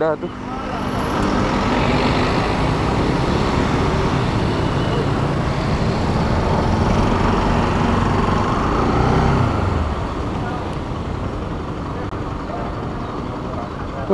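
Motorcycle engine running under way with wind rushing over the microphone, building up over the first couple of seconds, then easing off near the end as the bike slows.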